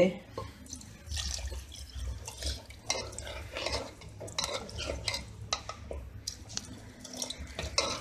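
Ladle stirring kidney beans and water in an aluminium pressure cooker: irregular clinks and scrapes of the ladle against the pot, with the liquid sloshing.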